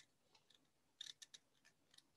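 Near silence, broken by a cluster of four or five faint short clicks about a second in.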